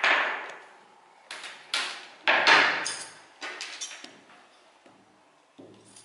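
Sewing tools knocking and clattering on a wooden worktable as a long plastic ruler and chalk are set aside and dressmaking scissors are picked up. There are several sharp knocks in the first four seconds, the loudest about two and a half seconds in, then only small taps.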